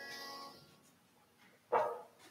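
A piano chord fades away over the first half-second, the close of the hymn accompaniment. Near the end comes one short, sharp sound, the loudest thing here.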